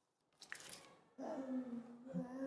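A slip of paper crackling for about half a second as it is handled, then, about a second in, a voice starts a long held 'ummm' hum.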